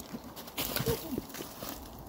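A tree climber stepping down off a trunk on climbing spurs: the spur gaffs scraping out of the bark and boots landing in snow, a few scuffs and knocks, the loudest just over half a second in.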